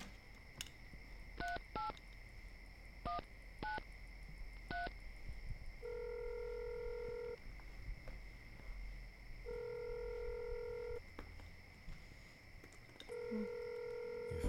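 Telephone keypad tones: five short key presses, then the ringing tone of an outgoing call, three rings of about a second and a half each.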